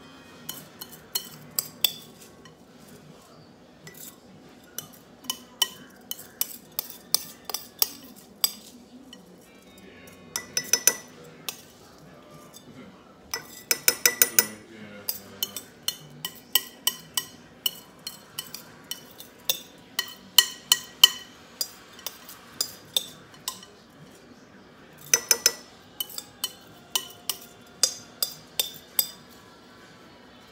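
A metal spoon clinking and scraping against a glass mixing bowl as wet rinsed rice is scooped out. The clinks are sharp and each rings briefly, some single and some in quick runs of several, with a few dense clusters partway through.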